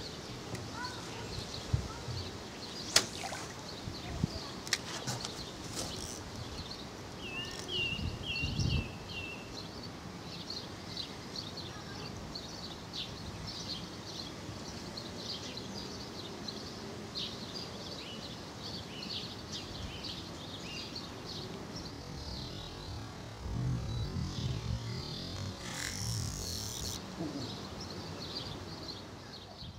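Small birds chirping in short, repeated calls over a steady outdoor background hum, with a few sharp clicks in the first few seconds and a brief hiss near the end.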